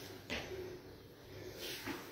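A person doing curtsy lunges, making two short bursts of sound about a second and a half apart in time with the reps.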